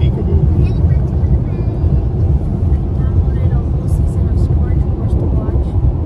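Steady low rumble of road and engine noise heard inside a moving car's cabin, with faint voices now and then.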